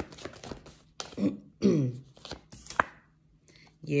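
Deck of oracle cards being shuffled and tapped by hand, a run of quick papery clicks at first and a few single clicks later. A couple of short throaty vocal sounds come in about a second in.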